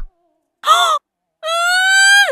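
Cartoon character's nonsense vocalization: a short nasal call about half a second in, then after a pause a longer held call that slowly rises in pitch.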